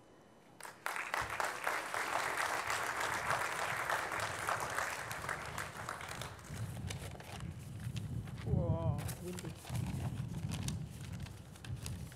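Audience applause that starts about a second in and fades out after five seconds or so. Then come low bumps and knocks from the lectern microphones being handled and repositioned, with a brief voice partway through.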